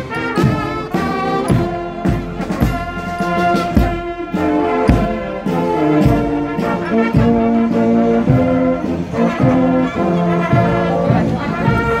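Bavarian marching brass band playing a march as it walks: trumpets, trombones, tuba and French horn over a regular snare drum beat.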